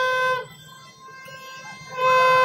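A horn blown in one long, steady, brassy note that cuts off about half a second in, over a low crowd din; the same note starts again at the very end.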